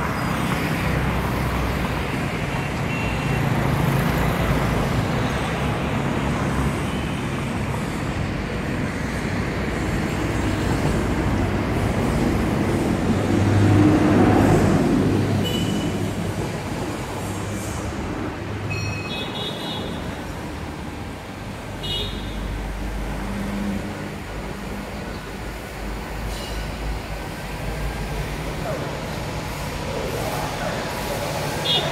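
Road traffic: cars and motorcycles running past on a city street as a steady rumbling noise, swelling as a louder vehicle passes about halfway through, then easing off. A few short high-pitched sounds come in the second half.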